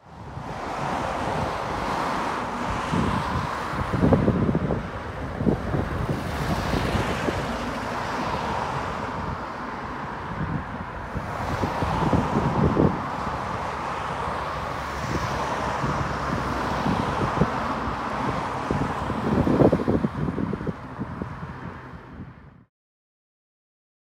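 Outdoor wind buffeting the microphone, a steady rushing noise with low rumbling gusts about four, twelve and twenty seconds in; it starts suddenly and cuts off at the end.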